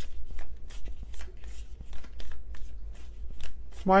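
Tarot cards being shuffled by hand: a quick, slightly uneven patter of card clicks, about five a second.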